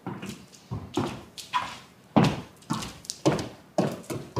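Footsteps on a wooden floor, about two steps a second.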